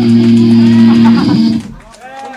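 Amplified electric guitar and bass holding one loud, steady chord at the end of a hardcore punk song. It cuts off abruptly about one and a half seconds in, leaving faint voices.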